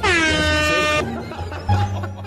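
A long plastic stadium horn (vuvuzela) blown in one loud blast of about a second, its pitch dropping sharply at the start, then holding one steady note before cutting off suddenly. Background music with a bass line runs underneath.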